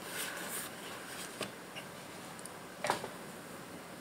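Small cardboard product boxes being handled in a small room: quiet rustling with a light tap about one and a half seconds in and a sharper click near three seconds.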